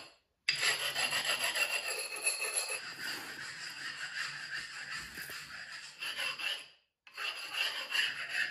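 A metal spatula scraping and smoothing heat-resistant stove mortar in quick, repeated rasping strokes. The sound stops abruptly twice for a moment: at the start and again near the end.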